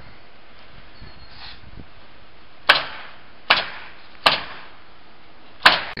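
Hammer blows on the building: four sharp strikes in the second half, the first three about a second apart, each with a short ring-out, over a steady background hum.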